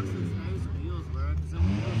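A car engine running steadily with a low hum, with men's voices talking over it.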